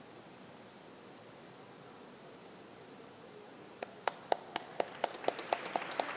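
Low room hiss, then about four seconds in hand clapping starts: sharp, evenly spaced claps about four a second, getting louder toward the end.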